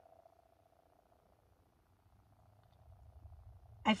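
Faint low hum of a car cabin, a steady rumble with a faint steady tone above it, swelling slightly near the end just before a woman starts speaking again.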